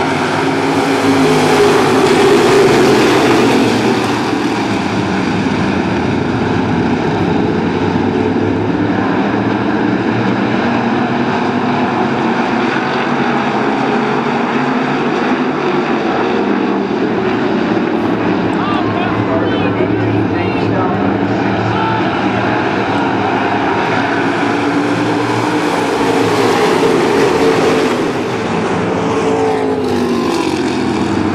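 A field of dirt-track stock cars racing, their V8 engines running hard together under throttle. The sound swells as the pack passes closest, about two seconds in and again near the end.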